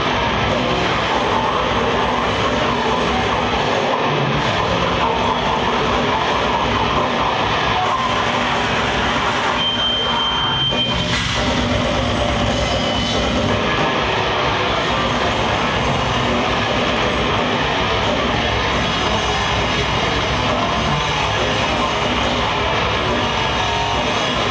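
A death metal band playing live on stage: distorted electric guitars, bass guitar and drums, loud and unbroken throughout.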